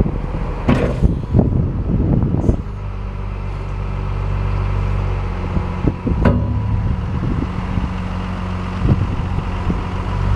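Daewoo Mega 200V wheel loader's diesel engine running steadily as the loader moves and its bucket is raised, with several knocks in the first two seconds or so and one sharp knock about six seconds in.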